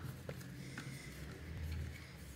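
Faint, sparse clicks and taps of a small hand tool working on the plastic insides of a portable Bluetooth speaker, over a low steady hum.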